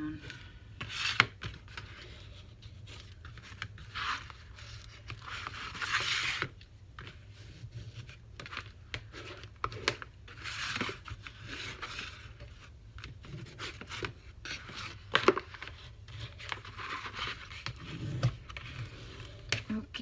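Paper being rubbed down and burnished with a plastic folding tool and by hand, in separate scraping passes of a second or two each, with a few sharp taps of the tool on the board.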